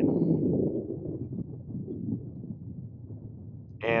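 Wind buffeting the microphone: a low, uneven rush, strongest at the start and easing off after about a second.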